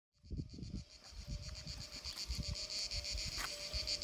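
Insects, such as crickets or cicadas, chirping outdoors in a steady, evenly pulsed high-pitched rhythm that starts about a quarter second in, over irregular low rumbles.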